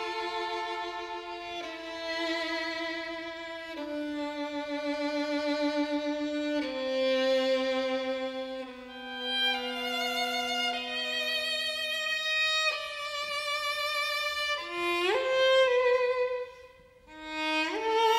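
String quartet playing slow, sustained bowed notes with vibrato, the chords changing every two seconds or so while the lowest voice steps downward. Near the end come two quick upward slides, with a brief drop almost to silence between them.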